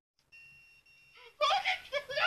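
A steady high electronic beep lasting about a second, then loud voices breaking out with laughter from about one and a half seconds in.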